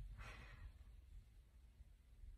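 Near silence: room tone, with a faint breath out about a quarter second in.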